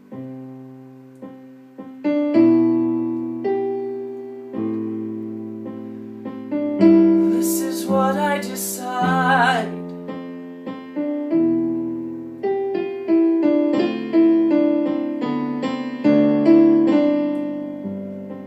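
Digital piano playing a slow song in struck chords, each left to ring and fade before the next. About seven seconds in, a voice sings a held, wavering note over the chords for a couple of seconds.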